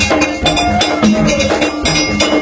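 Gagá (rara) band music: fast, clanking metal-bell strikes over drums, with short pitched notes repeating underneath.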